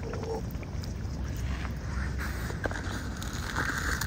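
Mute swan dabbling its bill in shallow water: small splashes and clicks of water over a steady low rumble of wind on the microphone.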